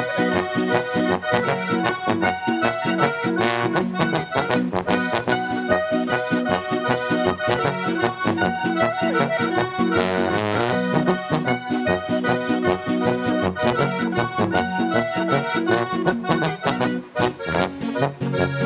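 Austrian folk-band music played live on diatonic button accordion (Steirische Harmonika) with electric guitar, in a steady, lively rhythm.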